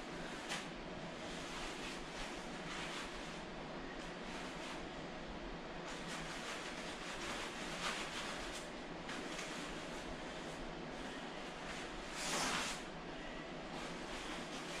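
Rustling of a plastic sauna suit as it is pulled off the legs, with a louder crinkling swish near the end, over a steady room hiss.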